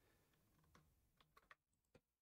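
Near silence with a few faint clicks from a computer keyboard and mouse, mostly in the second half.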